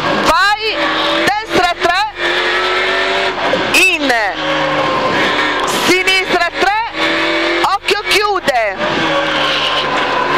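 Rover 216 rally car's engine heard from inside the cabin, revving up and dropping sharply again and again through quick gear changes and downshifts between corners. Between the revs are short stretches at steady revs.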